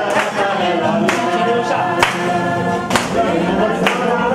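A group of women's and men's voices singing a hymn together, with hand claps about once a second keeping the beat.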